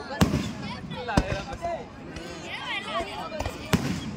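Fireworks display going off: three sharp bangs, one right at the start, one about a second in and one near the end, over a steady background of crackle and hiss.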